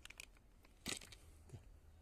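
Clear plastic food packet crinkling and being torn open by hand: a few small crackles, then one sharp rip about a second in.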